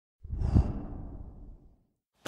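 Edited-in whoosh sound effect for an intro title transition: a sudden deep swoosh a moment in, peaking at once and fading away over about a second.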